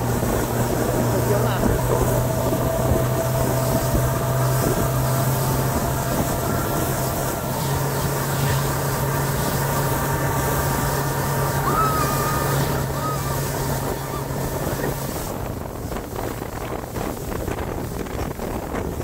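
Outboard motor running steadily at speed while towing, over wind buffeting the microphone and the rush of the wake. The engine's steady low note drops out about three-quarters of the way through, leaving wind and water.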